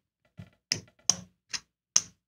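Casino chips clicking against each other as stacks are picked up off the craps layout to take down the place bets: about five sharp clicks, roughly half a second apart.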